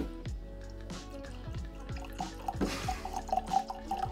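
Bourbon poured from the bottle into a Glencairn tasting glass, trickling and dripping, over background music with a steady beat.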